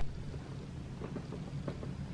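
A low, steady rumble of room or background noise, with a few faint light ticks in the second half.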